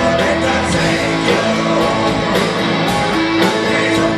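Live rock band playing: electric guitars, bass and drums over a steady beat.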